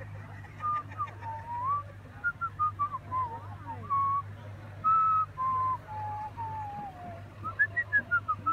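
A person whistling a tune: a string of held notes that step and slide up and down in a middle register.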